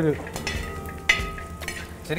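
Metal spatula stirring and scraping dried red chillies and sliced garlic frying in a pan, with a light sizzle and one sharp clink about a second in.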